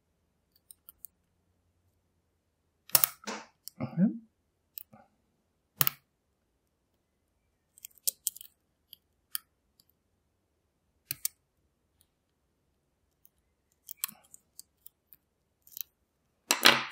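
Lock pick working inside a pin-tumbler lock cylinder: scattered small metallic clicks and scrapes as the pick moves against the pins under tension, a few a second at most, with one louder cluster about three seconds in.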